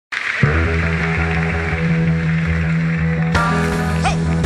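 Band music starting up: a steady, sustained groove comes in just under half a second in, and a brighter, fuller layer of instruments joins about three and a half seconds in.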